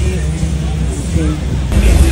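Busy roadside ambience: a strong, steady low bass rumble from loud music and traffic, with the voices of a crowd in the background.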